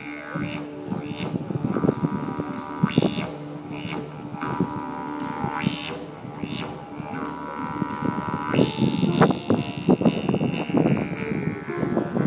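A didgeridoo drone with a steady rhythmic pulse and recurring higher held overtones. In the last few seconds sharp knocks and clatter come in over the music.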